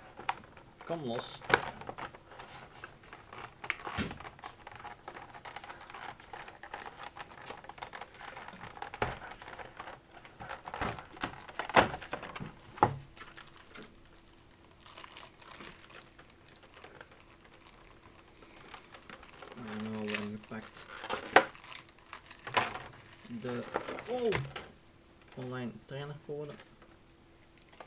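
Clear plastic packaging crinkling and crackling as it is handled, with scattered sharp clicks and snaps of the stiff plastic tray, two of them notably loud. Brief voices break in near the end.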